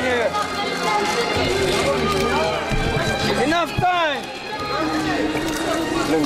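A crowd of people talking and calling out over one another, with several overlapping voices and a few sharp exclamations a little over halfway through.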